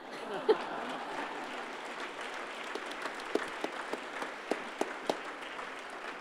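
Audience applauding steadily, a room full of scattered hand claps.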